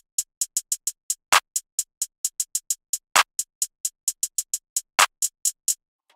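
Programmed trap drum loop of hi-hats and a clap: quick hi-hat ticks in a bouncy, uneven pattern with fast stutter rolls, and a louder clap about every two seconds. The loop stops just before the end.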